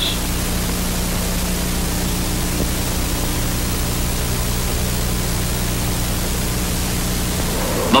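Steady hiss with a low, even hum underneath, unchanging throughout: the background noise of an old film soundtrack between lines of narration.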